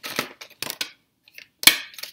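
Deck of oracle cards shuffled by hand: short rustles of card edges sliding, then a brief pause and one sharp slap about three-quarters of the way through as cards drop out onto the table.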